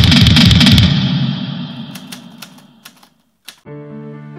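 A rapid burst of rifle fire, about eight shots a second for about a second, trailing off in echo. It is followed by a few scattered single shots. Soft music begins near the end.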